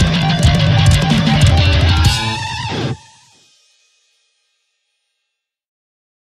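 Heavy metal band ending a song: distorted electric guitars, bass and drum kit. The drums stop about two seconds in while a held guitar chord rings on and falls in pitch, then it all cuts off abruptly about three seconds in.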